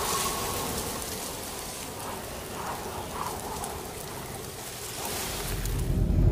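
Steady rain hiss, like rain falling on a wet street. Near the end, a low car engine and road rumble rises beneath it.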